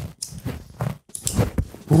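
A portable canister-gas cooktop being lit: several sharp clicks from the igniter knob, then a brief rush as the burner catches.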